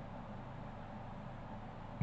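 Faint steady background hiss with a low hum underneath, and no distinct sounds: room tone.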